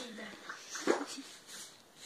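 Children's wordless cries and whimpers, with a single thump about a second in.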